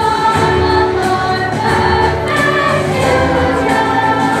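Music: a choir singing, with sustained sung notes that change pitch every second or so.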